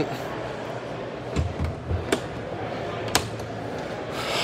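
Steady background hubbub of an indoor exhibition hall with distant voices. A few short clicks and a couple of low thuds fall in the middle.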